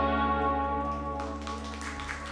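The band's final chord ringing out and fading, the electric guitars and bass sustaining several notes as they die away. About a second in, scattered hand clapping from a small audience begins.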